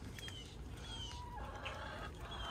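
Chickens clucking softly, with a few short, falling high chirps and a longer held call in the second half.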